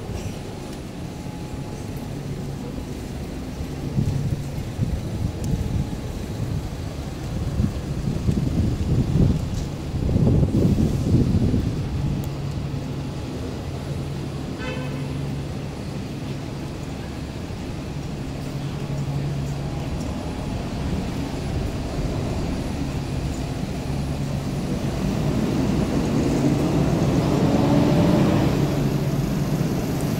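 Street traffic dominated by buses: a steady low engine hum from queued buses, with louder swells as vehicles pass, about ten seconds in and again building near the end.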